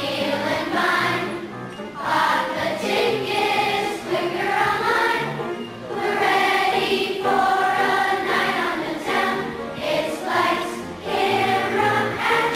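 A children's choir of fourth- and fifth-graders singing in unison with a musical accompaniment, in phrases with short breaths between them.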